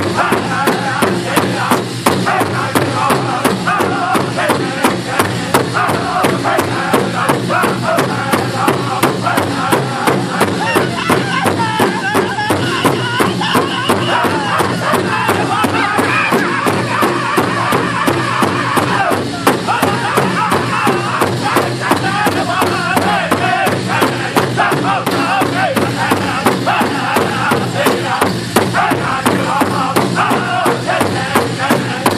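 Powwow drum group: several men striking one large shared drum together in a steady, even beat while singing in loud, high voices.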